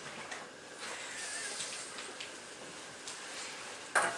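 Quiet room noise: a faint steady hiss with a few soft, scattered taps and rustles.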